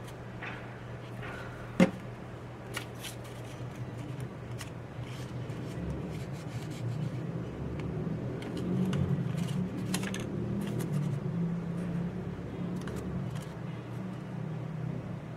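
Stiff folded paper being handled and pressed together by hand: scattered rustling, crackling and scraping, busier in the second half, over a steady low hum. A single sharp click about two seconds in is the loudest sound.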